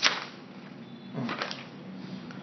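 A single sharp click right at the start, then a pause in a man's talk with faint voice sounds about a second in.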